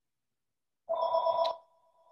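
A short electronic tone of two steady pitches sounds about a second in, holds for about half a second, then trails off faintly.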